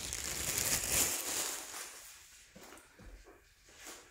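Clear plastic bag rustling and crinkling as it is handled, for about two seconds, then fading to a few faint taps.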